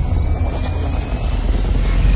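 Cinematic intro sound effect: a deep, steady rumble with a faint high tone slowly rising over it.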